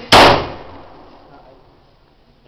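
A single sharp, very loud bang about a tenth of a second in, with a short ringing tail that fades away over about a second.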